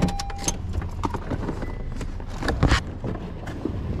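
Clicks and knocks of someone moving about inside a parked car and opening the driver's door, with a louder knock a little under three seconds in. A short beep sounds at the start, over a steady low hum.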